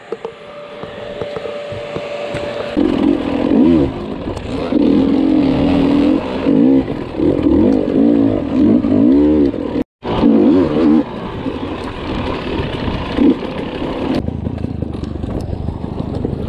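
Dirt bike engine revving in repeated bursts, its pitch rising and falling as it works over rocks, with clattering from the trail. The sound cuts out for an instant about ten seconds in, and the engine settles to a steadier, lower note near the end.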